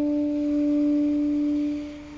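Tenor saxophone holding one long, soft note, almost pure in tone, that fades away near the end.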